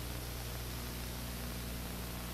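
Steady hiss with a low electrical hum underneath: the background noise of an old videotaped TV broadcast, with no launch roar standing out.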